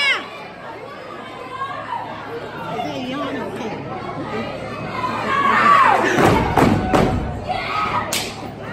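Audience chatter and shouts, then a quick run of heavy stomps on a wooden stage floor from a step team, about three-quarters of the way in.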